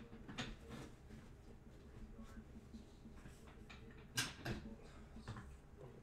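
Faint handling noises at a desk: a few light clicks and knocks over a low steady hum, the sharpest knock about four seconds in.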